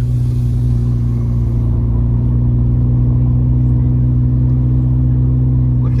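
Steady low drone of a car being driven, engine and road noise heard from inside the cabin.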